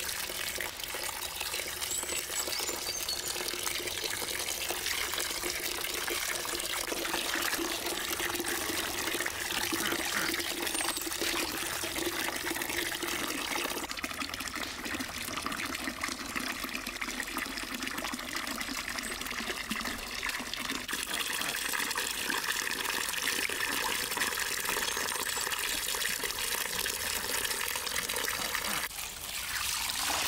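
Water from an outdoor tap pouring steadily into a large steel basin of water, with hands stirring and splashing through the water as peeled kiwi fruit are rinsed.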